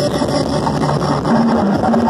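Live band music played loud through a stage PA, with a sung or played melody line coming back in over the band near the end.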